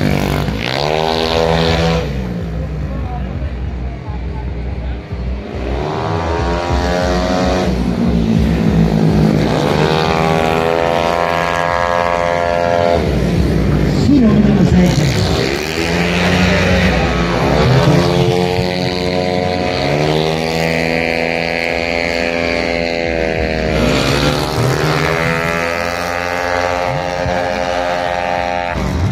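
Racing automatic (CVT) scooters passing one after another at full throttle, each engine note rising as it approaches and dropping away as it goes by, about six passes in all.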